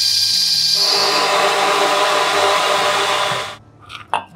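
Electric blender motor running as it blends a mango milkshake of mango and milk. Its sound changes about a second in, then it cuts off suddenly shortly before the end.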